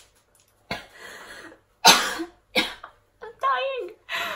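A woman coughing about three times, hand over her mouth, the loudest cough about two seconds in, followed near the end by a short voiced sound.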